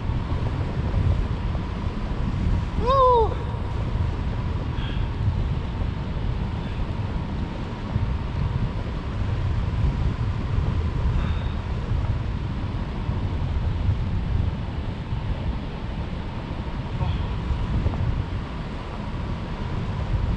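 Wind from a paraglider's forward flight buffeting the action camera's microphone, a steady low rumble. About three seconds in there is one short vocal cry that falls in pitch.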